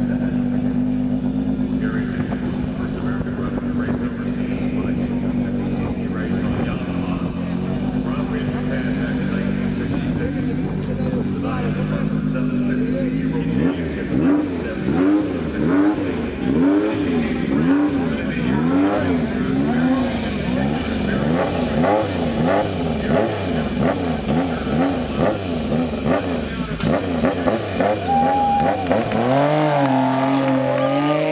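Racing motorcycle engine idling steadily, then from about halfway revved over and over with quick throttle blips, its pitch rising and falling a little more than once a second while it is held ready on the start line.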